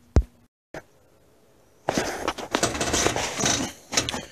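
A sharp click near the start, a brief dropout, then about two seconds of dense rustling and scraping from a handheld camera being moved and handled.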